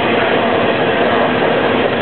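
Electric paint sprayer's pump motor running steadily while the sprayer is cleaned out, a continuous loud machine sound with a fixed hum.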